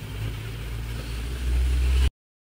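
A low rumble that swells about one and a half seconds in, then cuts off suddenly.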